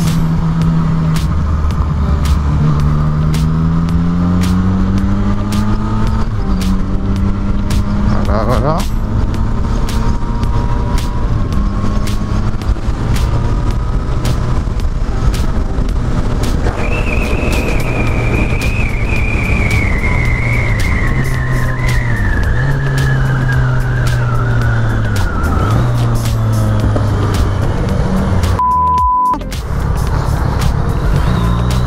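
Yamaha MT-09 Tracer's inline three-cylinder engine under way, its pitch climbing through the gears and dropping at each shift, over steady wind rush. A high tone slides slowly downward through the second half, and a short steady beep sounds about a second before the end.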